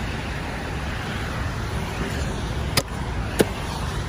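Steady rumble of road traffic, with two sharp clicks about half a second apart near the end.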